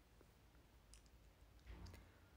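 Near silence: room tone with a few faint clicks about a second in and a short cluster of slightly louder clicks near the end.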